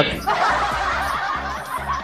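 A man laughing, a short run of chuckles between jokes.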